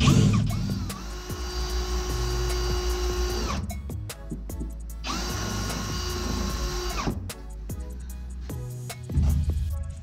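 Electric drill boring a small hole through a PVC bell reducer, run in two bursts of about three and a half seconds and then about two seconds, its motor whine holding a steady pitch while it cuts.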